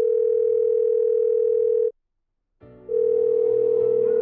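A telephone ringing tone for an incoming call: a steady single-pitched electronic tone held for about two seconds, a pause of about a second, then the same tone again.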